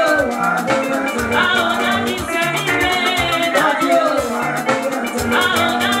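Live band music: electric guitar, bass and drum kit with a quick, steady percussion rhythm, and a woman singing over it.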